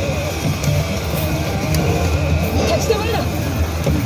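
Highschool of the Dead pachislot machine playing its stage music with character voice lines during a precursor (前兆) stage effect, over a steady low drone.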